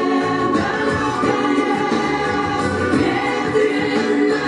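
Recorded song with choral singing over an instrumental backing, playing at a steady level as dance accompaniment.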